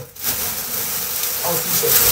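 Rustling and crinkling of a large bag being lifted and set down, a continuous rough noise.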